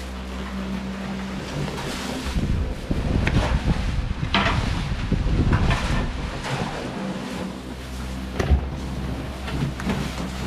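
Thick plastic wrapping rustling and crinkling as it is pulled and handled around a refrigerator, loudest from a couple of seconds in to about seven seconds, with a sharp thump about eight and a half seconds in. A steady low hum runs underneath.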